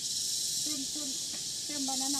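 A steady, high-pitched hiss of rainforest insects, unbroken throughout, with a faint voice murmuring briefly underneath.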